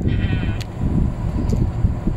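Low rumbling wind and road noise from a moving golf buggy. There is a short, high, wavering voice-like sound at the very start and a couple of faint clicks.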